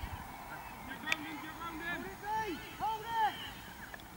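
Distant shouts of players on a football pitch: several short calls that rise and fall, bunched in the second half. One sharp knock comes about a second in.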